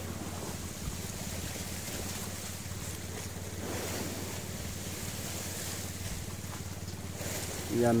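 A boat engine running with a steady, low drone, with wind and sea-wash noise over it.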